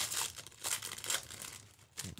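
Foil trading-card pack wrapper crinkling as it is torn open and handled. The rustles come in quick irregular bursts for the first second or so, then die away.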